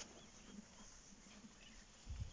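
Near silence: quiet bush ambience with a few brief, faint high chirps.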